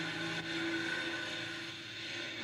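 City transit bus pulling away from the curb, its engine a steady drone that eases off slightly toward the end, heard through a television's speaker.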